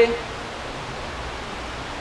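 A man's voice ends just at the start, then a steady, even hiss of background noise with nothing else in it.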